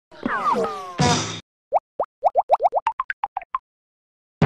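Cartoon logo sting: a sliding, warbling pitched sound lasting just over a second, then a quick run of about a dozen short plops that come faster and climb in pitch.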